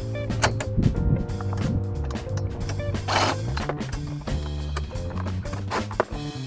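Background music with a steady bass line, over which a DeWalt cordless impact driver runs briefly about halfway through, backing a bolt out.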